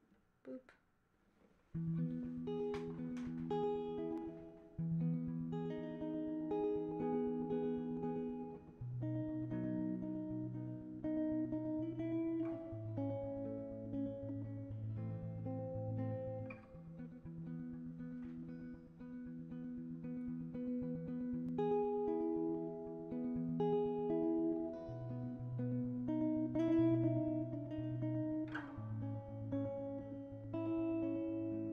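Hollow-body electric guitar played with a pick, starting about two seconds in after a short quiet moment: a steady run of held, overlapping notes over a low bass line.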